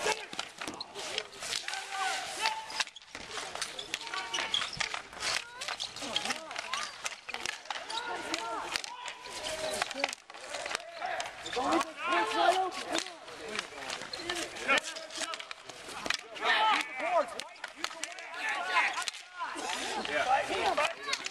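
Players' voices calling and chattering across an outdoor street hockey game, with frequent short sharp clacks of hockey sticks and the ball on the concrete rink.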